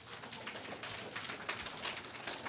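Room noise of a seated audience in a hall: rustling and shuffling with scattered small clicks and knocks, and no clear voices.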